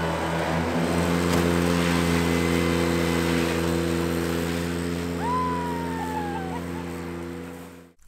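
Ventrac 4520 compact tractor with its Tough Cut brush mower running at a steady speed, a constant engine hum that swells over the first second or so and then slowly fades. A single falling whistle, about a second and a half long, sounds about five seconds in.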